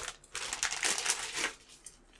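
Plastic parts bag crinkling and rustling in a quick run of crackles as it is opened by hand, dying away about a second and a half in.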